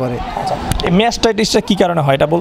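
A man speaking, after a short burst of noise with a couple of dull thumps at the start.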